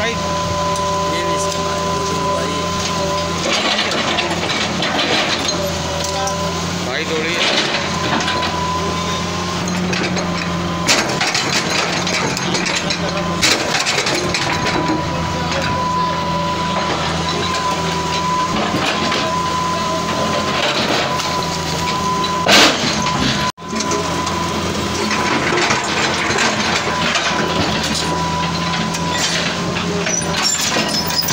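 Tracked excavator's diesel engine running steadily with a high whine, as its bucket breaks down a brick and concrete house. A few sharp crashes of breaking masonry and falling rubble come through.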